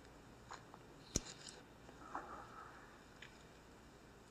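Quiet room tone with a single sharp click about a second in and a few faint small noises.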